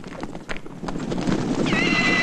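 The hooves of a large herd of horses galloping, a dense clatter that builds up about a second in, with one horse whinnying near the end.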